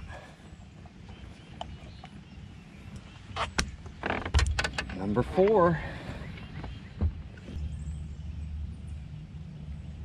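Sharp clicks and knocks of gear being handled on a boat deck, a short wavering voice-like sound about five seconds in, then a steady low hum from a bass boat's bow-mounted trolling motor starting about halfway through.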